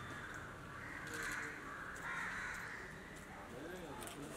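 Crows cawing, several caws about a second apart.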